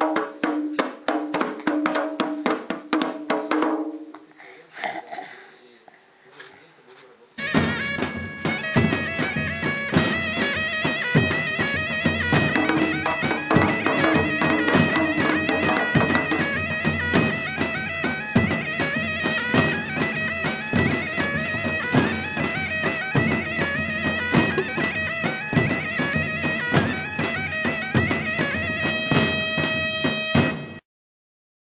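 A small child slapping a hand drum with open palms, a quick run of strikes over the first few seconds with a child's voice held over them. About seven seconds in, loud traditional folk music starts abruptly, with a reedy melody over steady drone tones and a driving drum beat, and plays to the end.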